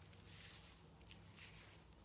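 Near silence, with a few faint, brief rustles as the fabric-covered body armor panel is handled and lifted off the sandbag.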